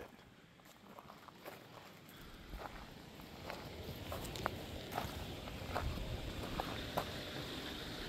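Faint footsteps on a gravel path: a few irregular light clicks and scuffs over a low, steady rumble.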